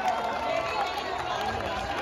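Hubbub of a large outdoor crowd, many voices talking and calling at once, with scattered light ticks.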